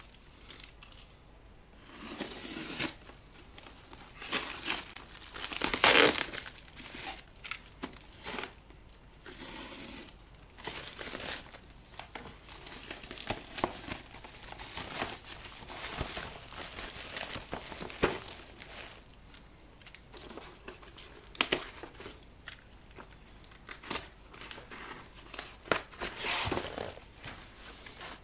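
Thin black plastic wrapping crinkling and tearing as a parcel is unwrapped by hand, then a cardboard box being slid out and its flaps opened. The rustling comes and goes irregularly, starting about two seconds in and loudest about six seconds in.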